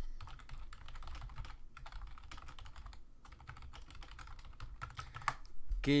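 Typing on a computer keyboard: many keystrokes in quick, uneven succession.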